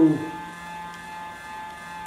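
Steady electrical hum with several fixed tones from an idling inverter welder, the Oerlikon Citosteel 325C Pro, switched on but not welding. One spoken word sits at the very start.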